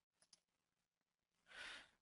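Near silence, with two faint clicks shortly after the start and a short breath from a man near the end, just before he speaks.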